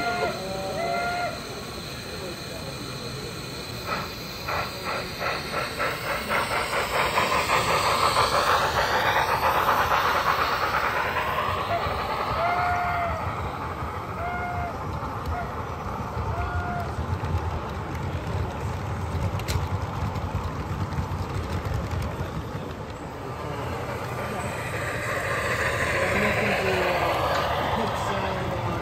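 LEGO model freight train of hopper cars rolling past close by on plastic track, its wheels clicking rapidly and evenly over the track joints and growing louder as it nears. Voices of a crowd murmur underneath.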